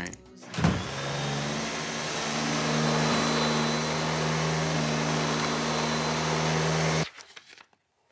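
Vacuum cleaner switched on about half a second in, running with a steady motor drone and whine, then cut off abruptly about seven seconds in.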